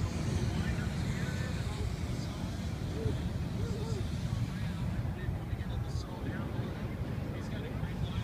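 Steady low rumble of wind buffeting the microphone, with faint voices of people nearby.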